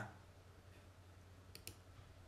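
Near silence: room tone with a faint low hum and two faint, short clicks about one and a half seconds in.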